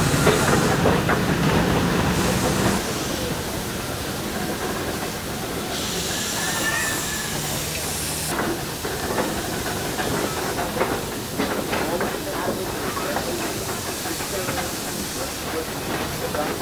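1928 German-built wood-fired steam locomotive and its wagons running, with a loud hiss of steam for about two and a half seconds in the middle and knocks and rattles from the train over the rails.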